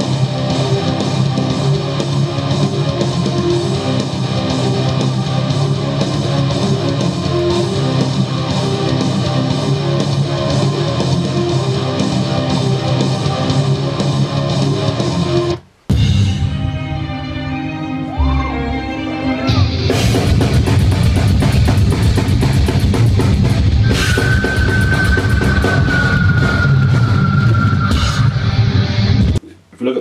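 Heavy metal mix: layered, distorted rhythm guitars over drums and the rest of the band, stopping abruptly about 16 seconds in. Then a live concert recording of a metal band: a sparser, quieter passage, and then the full band with distorted guitars and drums comes in a few seconds later. Near the end a high held note slides slightly down, and the music cuts off just before the end.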